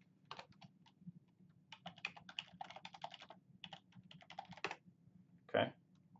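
Computer keyboard keystrokes: a run of quick typing of a switch command, densest about two to three seconds in, followed near the end by one brief, louder sound.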